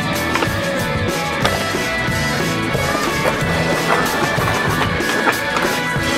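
A song plays over a skateboard rolling on concrete, with a few sharp clacks of the board.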